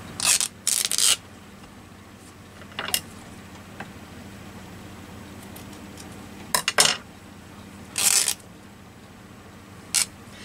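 Printed fabric torn by hand into narrow strips: about five short ripping sounds, two close together at the start, one about three seconds in, and two more late on.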